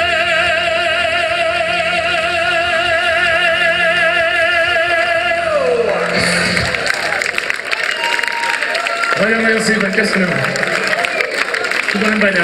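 A male singer holds one long, high note with vibrato for about five and a half seconds, then lets it fall away. The audience then applauds and cheers.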